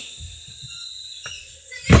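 Low rumble and faint rubbing of a phone being handled close to the microphone, with a small tick about a second in. Near the end a girl's voice starts loudly, calling out a name.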